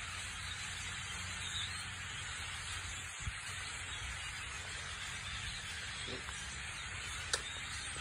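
Steady rushing hiss from a large flock of small birds flying through the trees, with no single call standing out. A faint click about three seconds in and a sharper one near the end.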